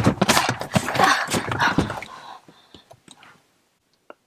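Loud rustling and scuffing with scattered knocks, fading out about three and a half seconds in and then cutting to silence.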